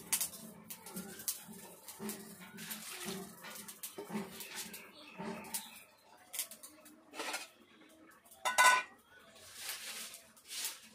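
A utensil scraping and clinking against a metal cooking pot as food is stirred on a wood-fired stove, in strokes about once a second that thin out after about six seconds. Near the end there is one brief, louder sound with a clear pitch.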